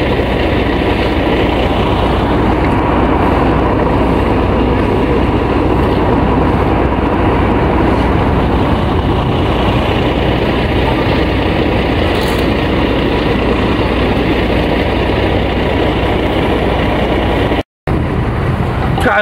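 Steady, loud outdoor street noise with a low rumble throughout, cutting out for a moment near the end.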